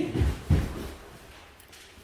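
Bare feet thumping on a wooden dojo floor in a karate footwork drill, where the feet snap out and in and then drive forward into a punch. Two low thumps come in the first half second.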